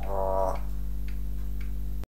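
A talking parrot's brief voice-like call lasting about half a second, followed by a faint steady ticking, about two ticks a second.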